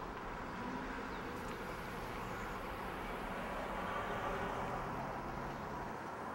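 Outdoor street ambience: a steady low hum of distant traffic that swells slightly around the middle.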